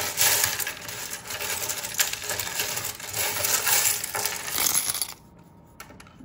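A handful of small metal charms and letter tiles clinking and clattering as they are shaken and tossed out onto a spread of cards. It is a dense jingle that stops about five seconds in.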